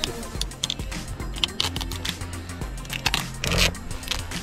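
Adhesive tape being pulled off the roll and wound around a paddle's screw head, making irregular crackling and tearing noises, louder bursts about one and a half seconds in and near the end, over background music.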